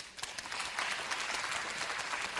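Audience applauding: a crowd's clapping that rises just after the start and carries on steadily.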